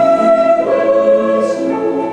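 Choir singing held notes, accompanied by two violins; the chord moves a little over half a second in and again near the end.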